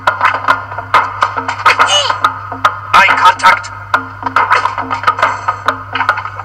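Film soundtrack: music with many sharp percussive hits and a repeating low note, with a voice heard over it.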